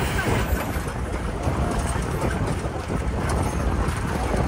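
Open-sided shuttle vehicle driving, its engine and road noise a steady loud rumble, with wind buffeting the microphone through the open sides.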